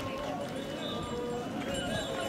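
Street procession going by: a crowd chattering and footsteps on the pavement, with faint metallic jingling from the ringed staffs carried at the head of the procession.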